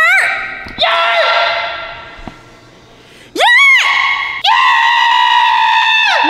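Loud, high-pitched yelling and shrieking with a long echo in a concrete parking garage. A short yell and a call that slowly dies away come first, then a sharp rising-and-falling shriek about three and a half seconds in, then a long held cry.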